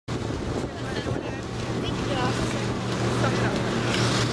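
Outdoor ambience of wind on the microphone, with a steady low hum and faint, distant voices chattering.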